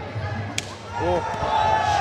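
A Muay Thai kick landing on an opponent: one sharp, crisp smack about half a second in, with a commentator's exclamation after it.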